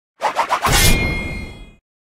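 Logo intro sound effect: three quick strokes, then a loud hit with a low rumble and a ringing tail that fades out after about a second.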